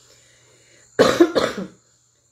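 A woman coughing twice in quick succession, short and sharp, about a second in.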